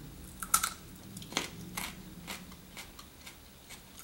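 Teeth biting into and chewing a raw, underripe green almond fruit: a string of short, crisp crunches, the loudest about half a second in, over a faint low hum.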